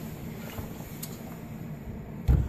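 Steady low background hum with a faint click about halfway through.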